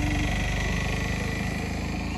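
A vehicle engine running steadily, low-pitched and even.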